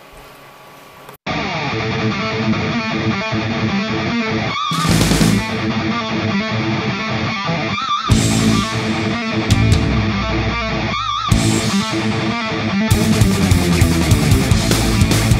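Background music with guitar, cutting in abruptly about a second in after a moment of quiet room tone and playing on loudly.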